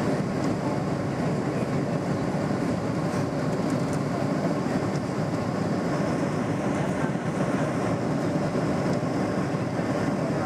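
Steady roar of engines and rushing air heard inside the cabin of a Boeing 737-800 on final approach with its flaps extended, its CFM56 turbofans running at approach power.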